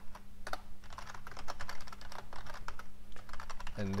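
Typing on a computer keyboard: a quick, irregular run of key clicks as lines of code are entered.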